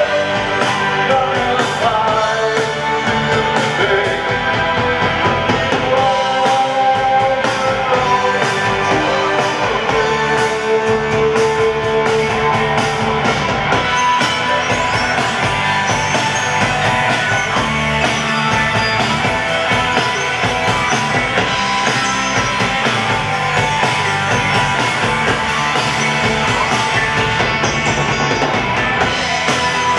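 Live rock band playing: electric guitars, drum kit and keyboards, with sustained synth or guitar notes over a steady beat.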